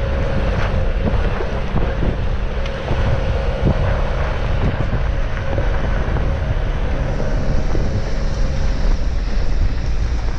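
A Jeep driving along a rocky dirt trail: a steady low rumble of engine and tyres, with scattered small clicks and knocks from stones under the tyres and wind buffeting the microphone.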